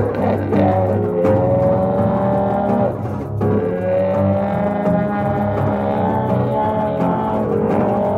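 Trombone played with a hand-held cup mute over the bell, sounding long held notes that bend slightly in pitch, with a short break about three seconds in, over a steady electric bass line on a hollow-body bass.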